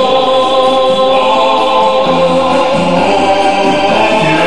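Music with a choir singing long held chords, the harmony shifting about halfway through.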